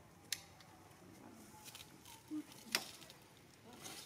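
Faint, quiet background with two sharp clicks, one just after the start and one about three quarters of the way through, and a short low blip shortly before the second click.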